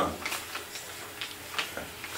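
Quiet room tone with a few faint, scattered clicks.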